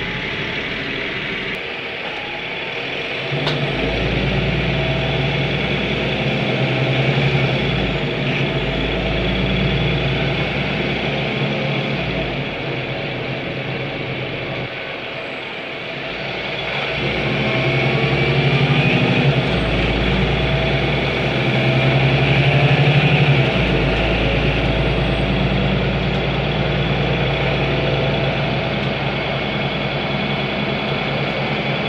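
Ursus City Smile 12LFD diesel city bus heard from inside the passenger cabin while driving: a steady engine drone that grows louder and deeper a few seconds in, eases off briefly in the middle, then builds again.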